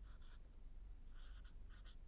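Felt-tip marker writing on a board: several short, faint strokes of the tip scraping across the surface.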